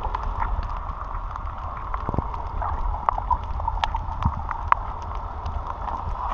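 Water sound picked up by a camera snorkelling over a coral reef: a steady low rumble and hiss, with many short, sharp clicks and crackles scattered irregularly through it.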